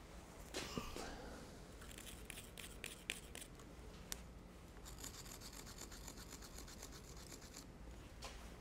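A thin marking tool scratching hole positions onto a steel platen backer: a few light metal clicks in the first half, then a few seconds of fast, faint back-and-forth scratching.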